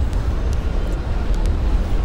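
Steady low rumble of outdoor background noise with a faint hiss above it, no single event standing out.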